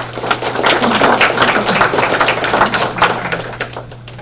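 Audience applauding: many people clapping together, the clapping thinning out and dying away near the end.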